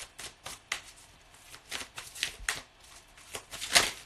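A deck of tarot cards being shuffled by hand, a run of irregular soft card flicks and slaps, the loudest near the end.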